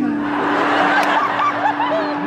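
Theatre audience laughing, many voices at once, swelling up right at the start and running through, over a steady low background tone.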